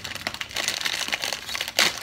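Plastic wrapper of a Samyang instant-noodle packet crinkling as it is pulled open by hand, with one louder burst near the end.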